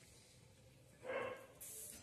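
A person's short breathy vocal sound with the mouth full while chewing, about a second in, after a second of near silence; a faint hiss follows near the end.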